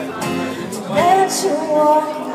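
A woman singing a slow song live with guitar accompaniment, her voice sliding up into a held note about a second in.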